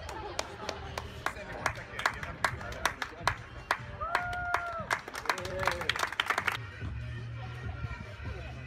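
Spectators clapping in a steady rhythm, about two or three claps a second, with a long held cheer from the crowd about four seconds in. The clapping cuts off suddenly near the end, leaving a low steady hum.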